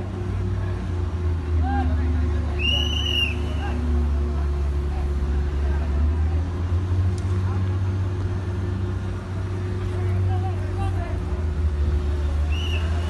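Steady low drone of heavy dockside and ship machinery, with a fainter steady hum above it and scattered distant voices. A short high-pitched chirp sounds about three seconds in.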